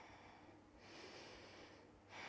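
A woman's faint breath during a held yoga pose: one slow breath lasting about a second, starting near the middle.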